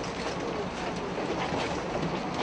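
Steady rumbling outdoor noise, with faint voices in the background.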